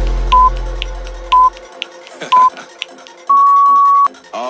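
Workout interval-timer countdown beeps over electronic background music: three short high beeps about a second apart, then one long beep marking the end of the work interval. The music's bass cuts out about halfway through.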